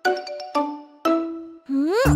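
Three chime notes about half a second apart, each struck and ringing out, then a rising sliding tone near the end: a cartoon musical jingle.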